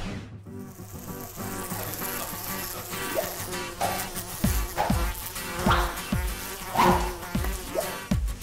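Many common green bottle flies buzzing together in a fly-breeding room. From about halfway through, a string of short falling swoops comes in about every half second.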